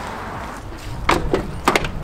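Four or five sharp knocks and clicks in quick succession, starting about a second in, over steady background noise.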